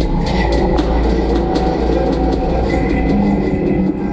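Loud experimental noise music: a dense wall of sustained, overlapping droning tones over a low rumble, with scattered clicks and a thin high tone that comes in twice.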